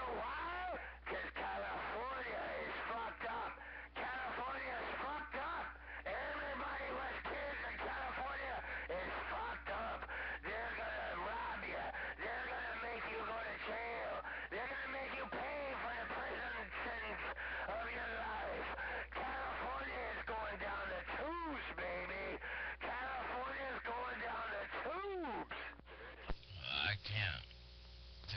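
A man's voice coming over a CB radio's speaker on a strong signal, continuous and garbled so that no words come through, over a steady low hum, with a few brief dropouts in the first six seconds.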